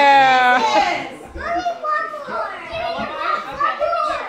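A young child's loud, high-pitched shout, held for about a second and a half, then young children talking and calling out during play.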